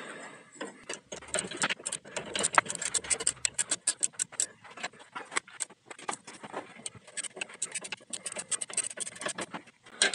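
Ratchet wrench clicking in quick, irregular runs on the drag link adjuster of a Ford F-350's front steering, as the drag link is adjusted to centre the steering wheel.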